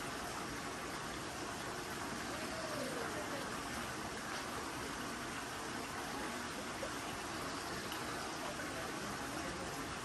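Steady rushing of running water from a small garden stream feeding a pond, with faint distant voices.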